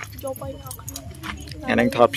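Keys or a small metal trinket on a cord jingling with quick light clinks as a hand waves them, under a woman's speech.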